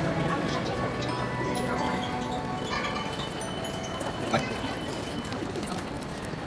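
Background music fading out in the first second, leaving faint music over the murmur of a crowded airport terminal, with one sharp click about four seconds in.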